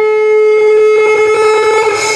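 Dance accompaniment music: one long note held steady in pitch on a wind instrument, bright with overtones.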